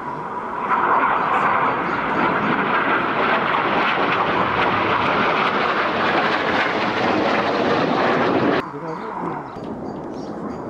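BAE Hawk T1 jet flying low overhead, its turbofan giving a loud, steady jet noise that builds in the first second. The noise cuts off abruptly about a second before the end.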